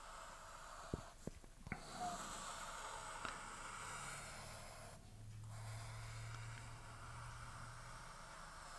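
Faint scratchy rasp of a felt-tip marker drawing long arcs on a pad of paper, in two long strokes with a short break between, after a few light taps near the start.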